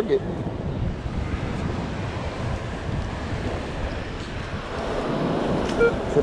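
Wind buffeting the microphone over the wash of surf, a steady rushing noise. Just before the end, a short metal-detector tone sounds.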